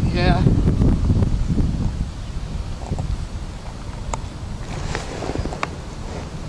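Wind buffeting the microphone over open water, heaviest in the first two seconds, then easing. A brief wavering pitched sound comes at the very start, and a few sharp clicks fall in the middle.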